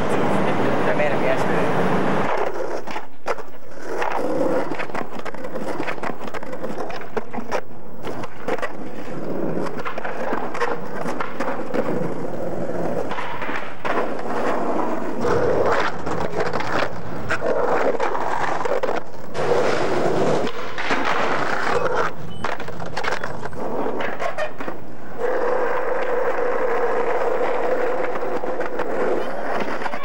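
Skateboard wheels rolling on pavement and concrete, broken again and again by sharp clacks of boards popping, landing and striking curbs.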